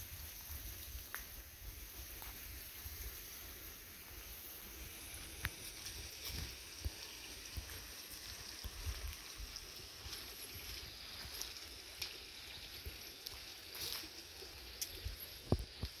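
Faint outdoor ambience on a dirt woodland path: soft footsteps and scattered light ticks and snaps over a steady faint hiss and low rumble, with one sharper snap near the end.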